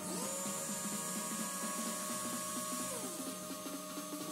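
Small brushless RC-car motor, driven by an electronic speed controller, whining as it spins up quickly to a set speed, running steady, then slowing to a lower, steady pitch about three seconds in as the commanded speed is lowered. Background music plays underneath.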